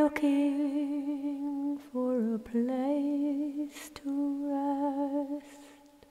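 A lone voice, with no accompaniment, hums long wordless held notes with a slight vibrato. The notes come in three or four phrases with short pauses between them, and the sound fades away near the end.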